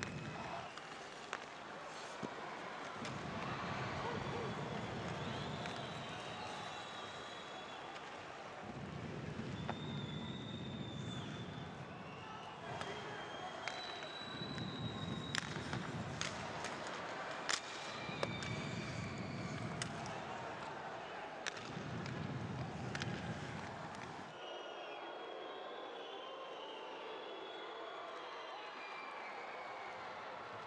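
Ice hockey arena sound during play: crowd noise swelling and fading in waves, with sharp clicks of sticks and puck on the ice and boards.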